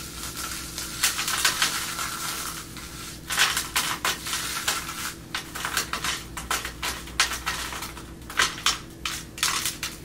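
Caramel rice crisps crushed and crumbled between the hands, with crumbs dropping into a plastic tray. It starts as a dense, continuous crackle and breaks into separate sharp crackles from about three seconds in.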